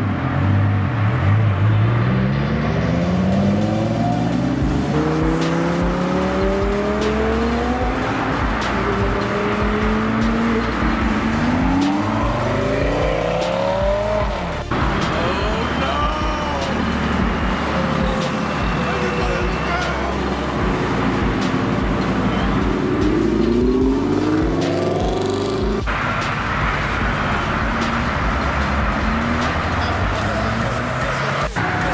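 Sports cars accelerating away one after another in short clips, each engine note rising as it revs up through the gears. A Lamborghini Gallardo V10 is at the start, a Ford Mustang around the middle, and a Nissan GT-R near the end.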